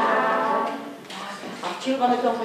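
A group of young children singing a folk song together, with held notes; the singing fades about a second in and starts again near the end.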